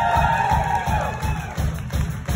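Country band playing live: electric guitars, bass and drums over a steady beat, with a held lead note that bends in pitch through the first second or so.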